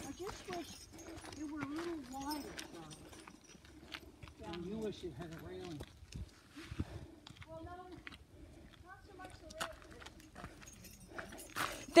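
Footsteps on a gravel trail, a steady run of light crunches, with faint conversation from people walking a little way ahead.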